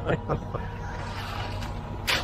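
Concrete mixer truck's engine running steadily with a low, even hum.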